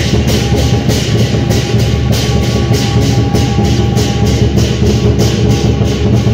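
Chinese dragon dance percussion: a large drum beaten in a fast, steady rhythm with cymbals clashing on the beat, about three strokes a second.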